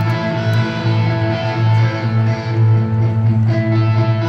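Live rock band's electric guitars playing sustained, ringing chords through a stadium sound system, with a steady low bass note underneath.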